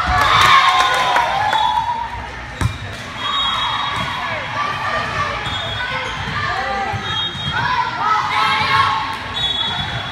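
Indoor volleyball rally in a large gym: players and spectators shouting and cheering, with a sharp thud of the ball being struck about two and a half seconds in.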